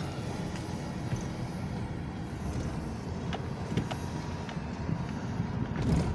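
Steady engine and road noise heard from inside the cab of a vehicle driving slowly, with a few faint clicks.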